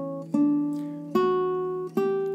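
Single fretted notes plucked one at a time on a nylon-string classical guitar, a new note about every 0.8 seconds in a slow steady rhythm, each ringing until the next. The pitch climbs as the player works through a beginner's two-finger exercise on neighbouring frets, string by string.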